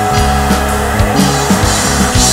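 Rock band playing an instrumental passage on drum kit, electric bass, electric guitar and keyboards, with drum strikes about twice a second over sustained bass notes.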